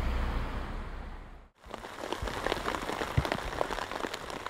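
Rain falling in a forest, a dense pattering with scattered heavier drips, which starts about one and a half seconds in after a brief drop to silence. Before that, a low steady hum fades out.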